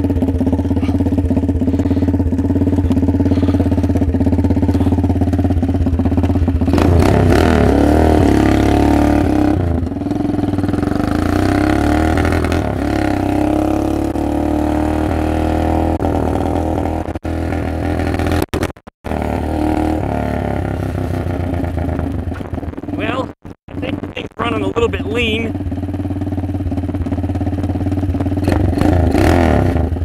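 Lifan 163FML 200cc single-cylinder four-stroke engine in a Doodlebug minibike, idling steadily for several seconds and then revving up and down as the bike pulls away and is ridden off. The engine runs lean under load. The sound cuts out completely twice for a moment as the wireless microphone loses range.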